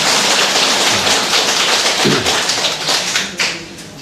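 Audience applauding, a dense patter of many hands clapping that dies away about three and a half seconds in.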